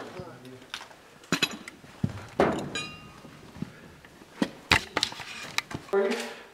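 Scattered knocks and clicks of people walking in through a doorway, with a short squeak about three seconds in and brief snatches of voice.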